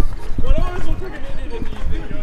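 Voices without clear words, over low thumps of footfalls on arena sand, the strongest at the start and about half a second in.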